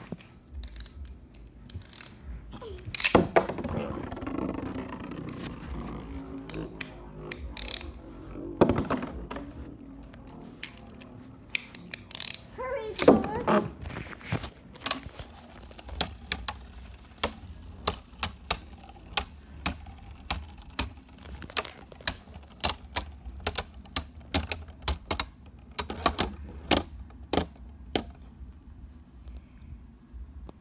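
Two Beyblade spinning tops in a plastic stadium: a few loud knocks and rattles in the first half, then a long run of sharp plastic clacks, about two to three a second, as the spinning tops repeatedly strike each other.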